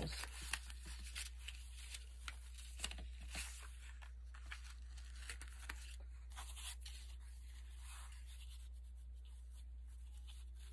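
Paper rustling and crinkling as die-cut paper doll pieces and a small paper envelope are handled and shifted on a journal page, a quick run of small rustles and clicks for the first few seconds, then fainter, over a faint steady low hum.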